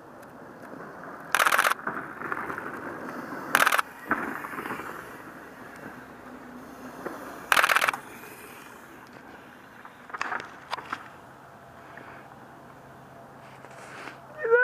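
Mountain bike tyres rolling over a trail of dry fallen leaves and dirt, a crackling crunch that builds as the bike comes close and passes, then fades. Three short, loud rattling bursts about 1.5, 3.7 and 7.6 seconds in, and a few lighter clicks later on.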